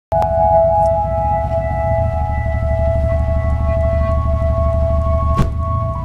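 A car stereo with a subwoofer plays electronic pop music loudly, heard from outside the closed car: a heavy, steady bass under long held synth notes.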